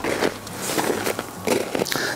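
Footsteps in snow: a person walks a few paces backward, about three steps.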